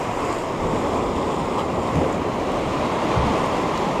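Sea waves washing over shoreline rocks in a steady rush, with wind on the microphone.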